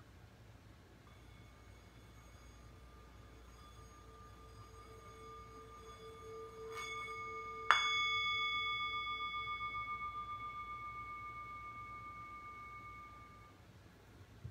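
A bell rung to close the story and open the wondering time. A faint ringing tone swells over the first few seconds, then comes a light strike and, just before eight seconds, a louder one. The clear ringing tone then fades over about six seconds with a steady wavering pulse.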